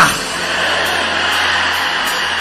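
Soft, steady background music with sustained notes, carrying on without a break.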